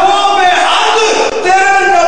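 A man's voice shouting at full force through a microphone and loudspeakers, in long, drawn-out, wavering cries: a zakir's impassioned majlis oration.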